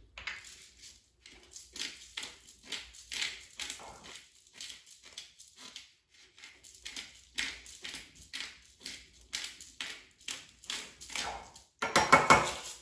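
Hand-twisted pepper mill grinding peppercorns: a steady run of short, gritty cracking strokes, two to three a second, easing briefly about five seconds in.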